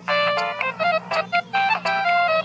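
Music: a quick melody of short, bright pitched notes in rapid succession, over a faint low steady drone.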